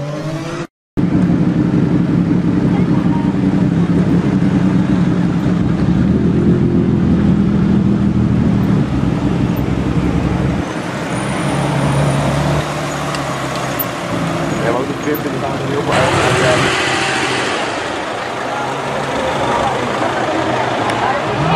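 Supercar engines running at low speed on a street, a steady deep engine note that changes about ten seconds in, with a louder surge of engine noise around sixteen seconds in.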